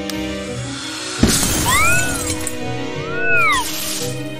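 Background music with cartoon sound effects: a sudden crash about a second in, then two whistling tones that each rise and fall.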